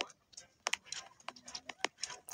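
Quiet, irregular light clicks, about half a dozen over the last part of two seconds, starting about two-thirds of a second in.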